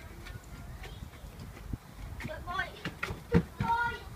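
Indistinct background voices, high-pitched like children's, in short snatches over a low steady outdoor rumble, with a few small clicks and one sharper knock a little after three seconds in.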